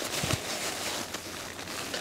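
Rustling of the awning room's black tent fabric as the door panel is rolled up at the bottom and fastened with its loop.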